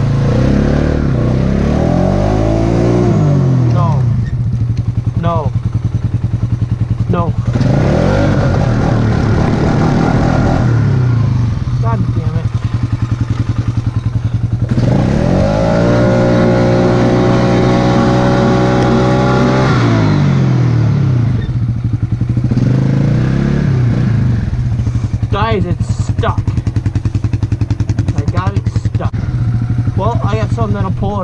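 Polaris Sportsman ATV engine revved up and down again and again while the quad is stuck in snow, with one long high rev in the middle and lower running between the revs.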